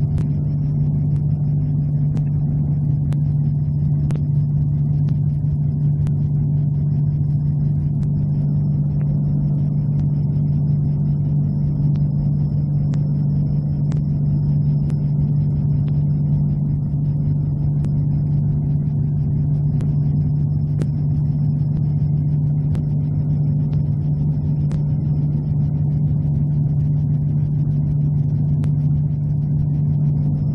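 Corvair 3.0 air-cooled flat-six engine and propeller of a Sonex Waiex light plane in steady cruise, a constant low drone heard inside the cockpit. The engine is running smoothly after a plug, oil and filter change.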